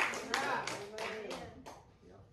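A few people clapping, irregular sharp claps that grow fainter and stop near the end, with a faint voice under them.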